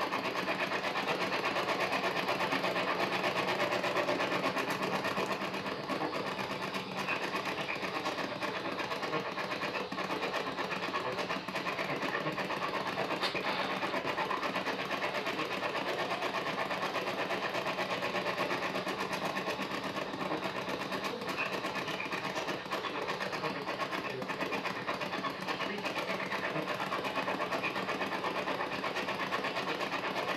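PSB-11 spirit box sweeping through radio frequencies: a steady, rapidly chopped radio static with brief snatches of station audio, from the device's speaker.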